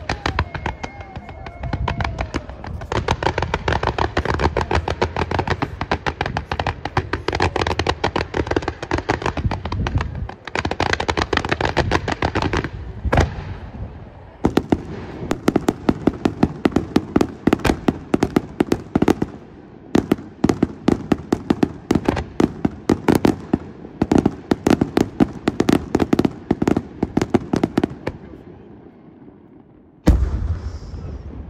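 Fireworks display: multi-shot barrages and aerial shells firing in a rapid, dense run of bangs. The firing dips briefly just before halfway, picks up again with fast reports, and fades near the end.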